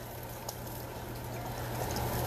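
Stir-fried cabbage sizzling in a hot pan as sweet sauce is drizzled over it, the sizzle steady and growing a little louder near the end, over a steady low hum.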